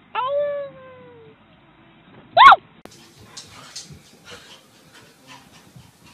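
A dog gives a drawn-out whining howl that slides slowly down in pitch, then a short, loud yelp about two and a half seconds in, the loudest sound. Quieter scattered noises follow.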